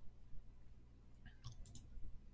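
A quick run of about four faint clicks from a computer being operated at the desk, a little past halfway, over a low steady hum.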